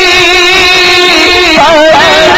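A man's voice holds one long sung note of a naat into a microphone, with a slight wavering vibrato. Near the end it breaks into a quick melodic turn.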